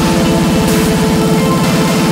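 Melodic speedcore music: a very fast, even kick drum under sustained synth notes, steady and loud.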